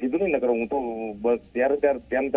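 A man singing a short melodic line heard over a telephone line, with a held note about half a second in.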